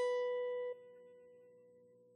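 Solid-body electric guitar: a single plucked note, the B at the seventh fret of the high E string, rings out and fades. It is damped about three-quarters of a second in, leaving only a faint ringing tail.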